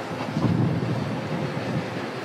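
A wheeled armoured personnel carrier driving slowly past, heard as an uneven rumble of engine and tyres.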